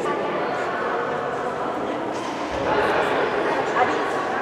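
Many people talking at once in a sports hall: a steady chatter of overlapping voices, with high-pitched girls' voices among them.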